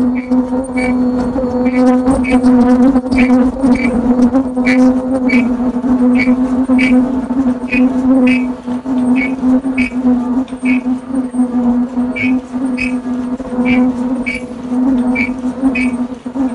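Automatic disposable face-mask production machine running: a steady hum with short sharp clicks from its mechanism about once or twice a second, often in pairs.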